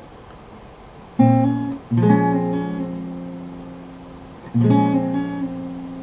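Acoustic guitar playing a B-flat minor 7 chord with the middle finger hammering on a note: the chord is struck about a second in and again soon after, left to ring out, then struck once more near the end.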